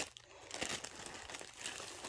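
Clear plastic bag crinkling faintly as a rolled diamond-painting canvas is slid out of it.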